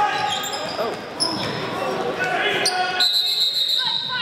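Basketball being played on a gym's hardwood floor: sneakers squeaking, the ball bouncing and voices of players and spectators echoing in the hall. About three seconds in, a referee's whistle sounds, a steady shrill tone held for about a second.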